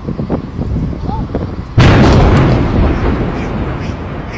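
Demolition explosive charges at the base of a tall concrete tower: a few light pops, then about two seconds in a sudden loud blast that trails off into a long fading rumble as the tower starts to topple.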